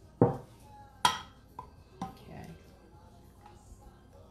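Stainless steel saucepan and silicone spatula knocking and clinking against a bowl as a warm liquid mixture is scraped and poured out, a few short sharp clinks about one and two seconds in.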